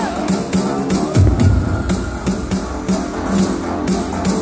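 Music with a steady drum beat, played loud over a club sound system.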